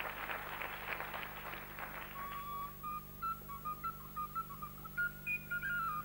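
Audience applause dies away over the first two seconds. A small blue toy whistle played by mouth then picks out a thin, high melody of short, stepped notes.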